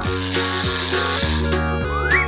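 Cartoon background music, with a whirring, rattling fishing-reel sound effect over the first second and a half as a fish is reeled up out of the water.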